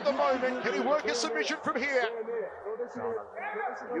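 Male sports commentary from a fight broadcast, a man talking over the action.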